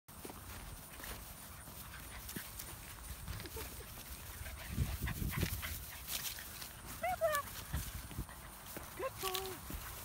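Puppies scampering and tussling on dry grass, with rustling and soft footfalls throughout. A short high whine about seven seconds in and a lower, held one near the end.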